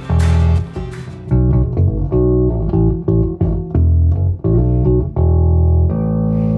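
Seven-string electric bass being played: a phrase of plucked low notes, some short and some held for about half a second.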